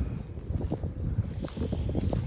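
Footsteps swishing and crunching through dry grass, uneven and quick, with a low rumble of wind on the phone's microphone.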